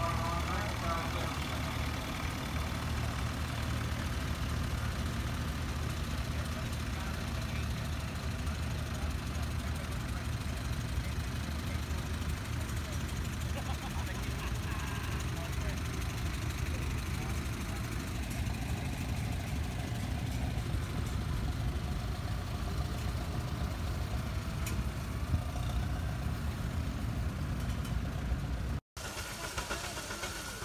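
Antique engines idling and running slowly and steadily: a vintage tractor, and a 1913 International Auto Buggy chugging past, with voices in the background. The sound breaks off sharply near the end.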